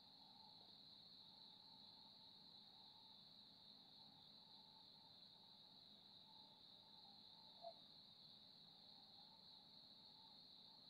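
Near silence, with crickets chirring faintly and steadily in the background. One soft click about three quarters of the way through.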